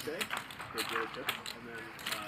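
Poker chips clicking together repeatedly as a player handles his stack, over faint chatter at the table.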